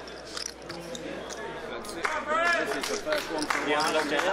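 Low murmur of voices in a large hall, with scattered sharp clicks of poker chips being handled at the table.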